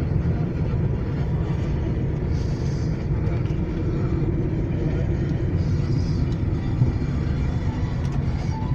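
Steady engine and tyre rumble heard from inside a car's cabin as it drives up a winding mountain road.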